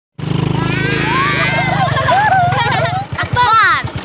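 A small motorcycle engine on a becak motor (motorcycle with sidecar cart) runs under way. About three seconds in it drops to a slower, even idle as the vehicle stops. Children's voices call out over it.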